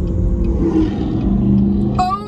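A car engine accelerating, a loud deep rumble that settles into a steady drone in the second half.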